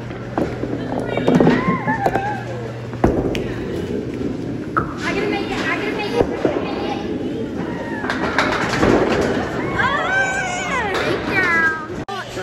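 A small bowling ball lands on the wooden lane with a sharp knock about three seconds in, then rolls down the lane with a steady low rolling noise. Children's voices squeal and call over it, loudest near the end.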